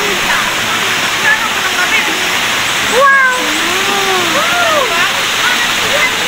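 Tall waterfall pouring steadily into its plunge pool, a constant loud rush. People's voices are heard over it, most plainly around the middle.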